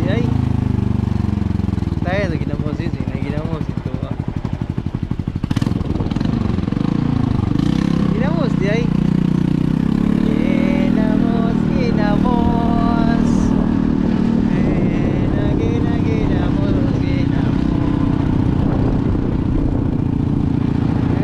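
Motorcycle engine running while riding, its note dipping and rising in pitch around the middle, then holding steady.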